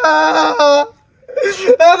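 A man wailing and crying in long drawn-out, sing-song cries. The wailing breaks off a little under a second in and starts again a moment later.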